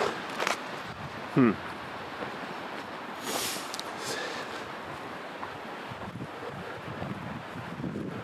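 Footsteps on a dirt forest trail over a steady outdoor hiss of wind, with a brief high rustle about three seconds in.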